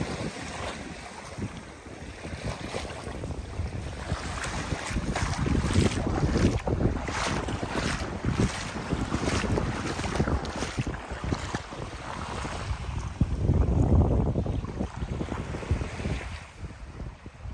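Wind buffeting the microphone, with a strong gust near the end, over small waves washing onto a sandy shore.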